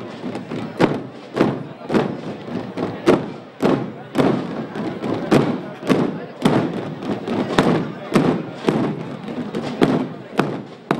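A single muffled drum beating a slow, steady march, about two beats a second, each beat a dull thud with a short ring after it.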